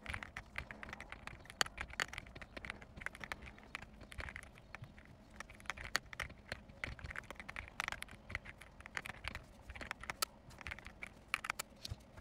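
Computer keyboard typing: a rapid, dense run of key clicks.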